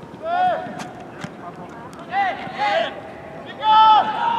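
Players on a football pitch shouting short calls during play, ending with a longer held shout. Two sharp knocks about a second in, between the shouts.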